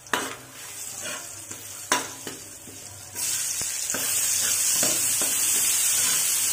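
Garlic and sliced red onion sautéing in hot oil in a metal wok, stirred with a metal ladle. Two sharp knocks in the first two seconds, then the sizzle turns loud about three seconds in, with ladle strokes scraping the pan.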